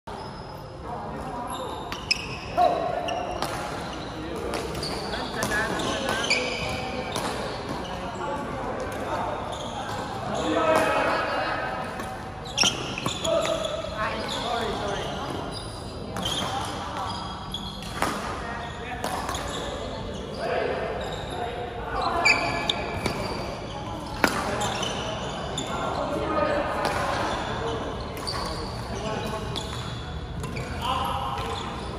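Badminton doubles play in a large echoing hall: scattered sharp cracks of rackets hitting the shuttlecock, with footsteps and shoe squeaks on the court floor, over a steady murmur of voices from the hall.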